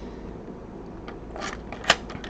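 Key scraping into the keyway of a Schlage JD-60 deadbolt, with a faint scrape about one and a half seconds in and then a single sharp metallic click near the end. The keyway has just been freed of cured superglue by flushing it with acetone.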